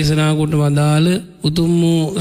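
A Buddhist monk's voice chanting in a drawn-out, sing-song tone, holding long notes at a nearly even pitch: two long phrases with a short pause about one and a half seconds in.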